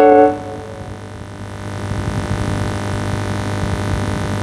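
One keyboard chord struck at the start, the closing chord of a karaoke backing track, dying away within about half a second. It gives way to a low steady electrical hum with hiss that grows louder over the next couple of seconds.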